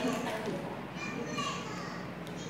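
A young child talking in Korean, played from a video over the lecture room's speakers.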